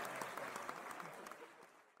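Studio audience applause dying away, the clapping fading steadily over the two seconds.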